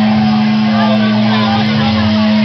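A loud, steady amplified drone from the stage: one held note hangs over crowd chatter and shouts, just before the band starts the song.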